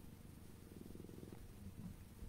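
A domestic cat purring faintly close to the microphone: a low, steady, finely pulsing rumble.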